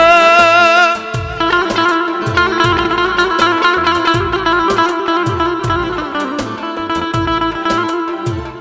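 Live Middle Eastern dance music: a held, wavering melody in the first second gives way to a fast plucked-string line over a steady electronic drum beat.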